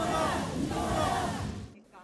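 A group of protesters shouting a slogan in unison in Korean, "순직을 인정하라!" (recognise the death as in the line of duty). The chant breaks off sharply near the end.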